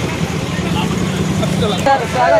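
A vehicle engine running steadily with a low, even hum that stops abruptly shortly before the end, under faint crowd chatter.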